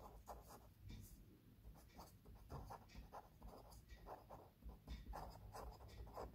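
Felt-tip pen writing on paper: faint, quick scratching strokes, one short stroke after another as letters are written out by hand.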